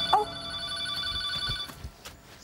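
Telephone ringing steadily, stopping about one and a half seconds in, with a short vocal exclamation just after the start.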